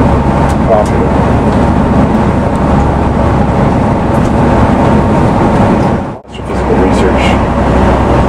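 Steady low drone of a tour bus's engine and tyres on the highway, heard from inside the cabin. The sound drops out briefly about six seconds in, then carries on.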